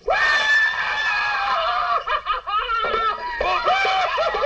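Shrill whooping and shrieking voices at play: one long high yell, then shorter calls, turning into wavering war whoops near the end.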